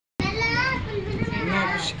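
Speech only: a voice talking.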